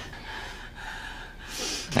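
Quiet room tone, then an audible intake of breath by a person near the end.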